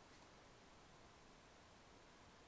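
Near silence: faint steady hiss of the recording's noise floor.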